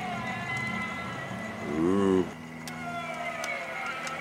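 Electric wheelchair drive motors whining as the radio-controlled base drives, the whine drifting in pitch with speed over a steady low hum. A short voice sound comes about two seconds in.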